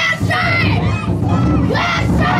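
A group of children shouting together in repeated calls, several high voices overlapping with a fresh call about every half second.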